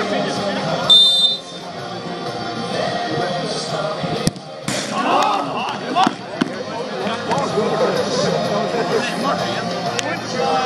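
Referee's whistle, one short shrill blast about a second in, signalling the penalty kick. About three seconds later comes a sharp kick of the football, then a thump, and players shout.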